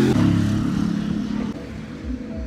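A road vehicle's engine running close by on the street, loudest at first and fading after about a second and a half.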